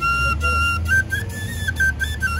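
Bansuri (bamboo flute) playing a slow melody: a held note, then stepping up and back down between a few neighbouring notes.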